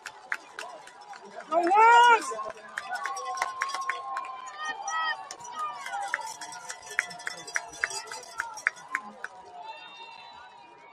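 Football stadium crowd and sideline voices calling out, with one loud shout about two seconds in and a run of quick, sharp taps in the second half.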